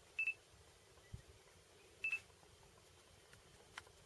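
Two short high-pitched electronic beeps, each a quick double pip, about two seconds apart, followed by a faint click near the end.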